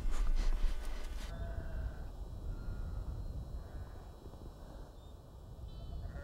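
Sheep bleating faintly in the distance, a few short calls over a low steady rumble. In the first second, a brief spell of short rustling and knocking sounds.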